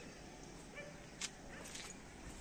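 Faint outdoor background noise with a brief, distant animal call just under a second in and a single sharp click a little later.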